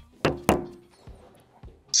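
Two sharp knocks about a quarter-second apart as a smartphone is set down on a wooden tabletop, followed by a few faint clicks.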